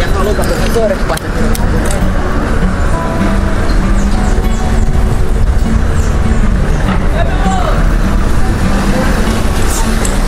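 Street noise heard from a moving bicycle: a steady wind rumble on the microphone, with car traffic and indistinct voices.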